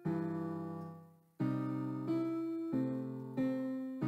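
Piano playing a slow blues piece: a chord rings and fades for over a second, then chords and bass notes follow at an even pace, about one every two-thirds of a second.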